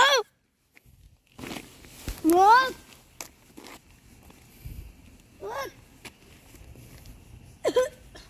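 A voice giving three short exclamations that rise in pitch: one at the start, one about two and a half seconds in, and one about five and a half seconds in, with a few soft knocks in between.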